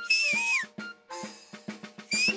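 A shrill finger whistle that wavers and then drops away, over background music with a drum beat of about four strokes a second.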